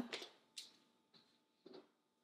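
Near silence: room tone with two faint, brief knocks, one about half a second in and one near the end.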